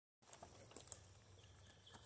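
Near silence: faint outdoor background with a few faint ticks.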